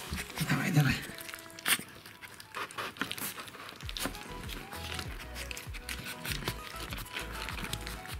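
Young Rottweiler puppy lapping and smacking soft puree from a plastic bowl: a run of irregular wet clicks. A short voice-like sound comes about half a second in.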